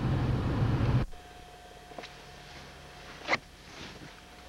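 Car running, heard from inside the cabin as it moves slowly, cut off abruptly about a second in where the recording is paused. After the cut, a quiet background with a faint steady tone and two short sharp clicks, the second louder.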